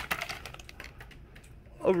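Light clicks and crinkles of plastic packaging being handled as a blister-packed toy is lifted out of a cardboard box, busiest at the start and fading, with a voice starting near the end.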